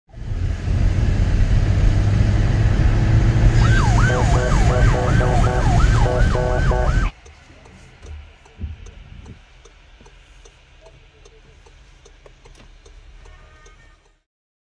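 Police siren wailing in a fast yelp, rising and falling about twice a second, over the loud drone of engine and road noise heard from inside a moving car. About seven seconds in, the sound cuts off suddenly to a much quieter cabin with faint, evenly spaced ticks.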